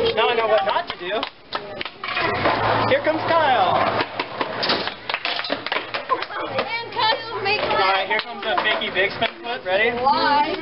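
Overlapping chatter and calling-out of an audience, many voices at once, with scattered sharp knocks throughout.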